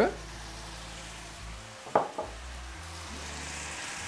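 Chanterelle mushrooms in a cream and broth sauce sizzling steadily in a frying pan as the sauce begins to reduce, with one short knock about two seconds in.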